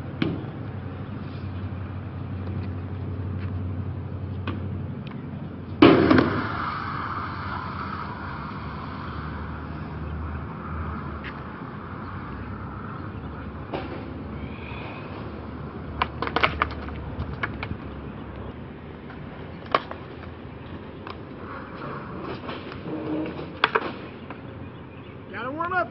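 Skateboard wheels rolling on concrete with a steady rumble. A loud clack of the board hitting the ground comes about six seconds in, and several lighter clicks and knocks follow later.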